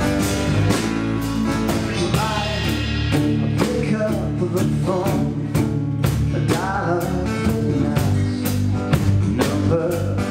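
A live band playing a blues-pop song: acoustic and electric guitars, electric bass and drum kit, with a steady beat on the drums.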